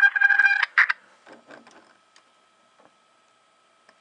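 Police radio scanner audio from a Los Angeles Police Department feed, played through an iPod touch's small speaker. A loud, steady electronic tone with overtones cuts off less than a second in and is followed by a short blip. The feed then goes almost silent, with faint clicks and a faint steady whine.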